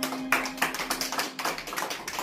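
A few people clapping, a quick uneven run of hand claps, while the last held note of the dance music fades out about three quarters of the way through.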